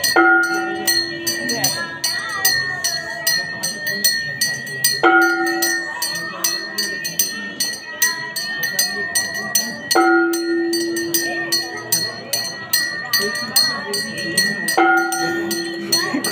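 Temple aarti: metal bells or cymbals struck rapidly and without a break over a steady high ringing tone, with voices chanting along. A held low note with overtones returns about every five seconds.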